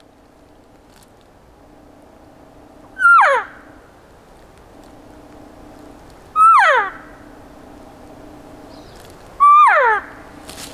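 Three cow elk mews blown on a diaphragm mouth call, a few seconds apart. Each is one short note that holds briefly, then slides down in pitch.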